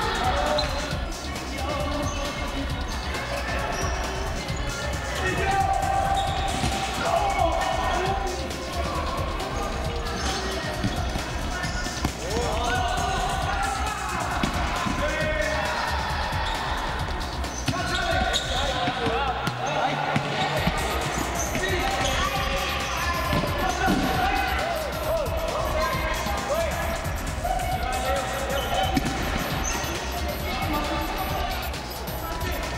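Futsal match sounds on an indoor wooden court: the ball thudding as it is kicked and bounces, with players' voices in the hall.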